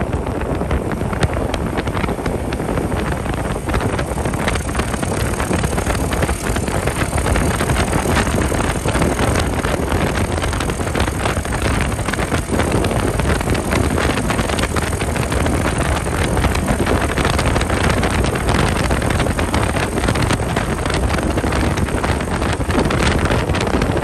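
Honda SL70 minibike with a Lifan 125cc single-cylinder four-stroke engine running steadily while riding along, mixed with constant wind rush on the microphone.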